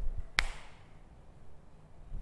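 One sharp click about half a second in, followed by faint room tone.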